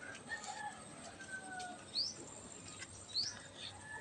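Birds chirping faintly: thin whistled notes and two quick rising chirps, about two and three seconds in.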